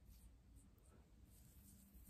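Near silence, with only a faint, soft rustling of fingers working through short, damp hair.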